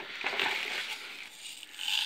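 Black plastic bin bag rustling and crinkling as hands rummage through it, an irregular rustle that grows a little brighter near the end.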